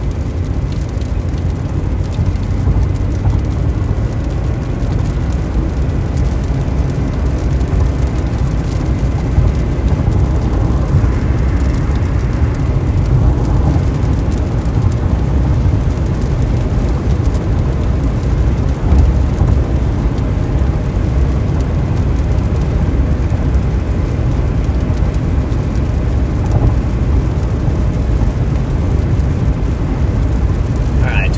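Steady road noise inside a car's cabin at highway speed: a low rumble of tyres on wet pavement, with a brief swell of hiss about twelve seconds in.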